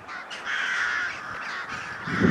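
A flock of crows calling overhead, many caws overlapping into a continuous chorus that is loudest about half a second to a second in.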